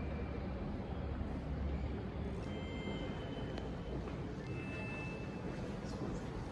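Steady low rumble of background noise, with a few faint held high tones about a second long, two together around the middle and one more near the end.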